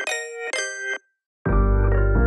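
Instrumental intro of a hip-hop beat: a melody of short ringing notes about two a second stops suddenly about a second in. After a brief silence the full beat drops with deep bass and keyboard chords.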